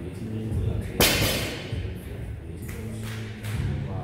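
Loaded barbell with bumper plates dropped from hip height onto a rubber gym floor about a second in: one sharp, loud impact that rings out and fades over about a second.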